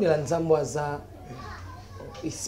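A man's voice, speaking or exclaiming in a drawn-out, raised tone for about the first second, then low room noise.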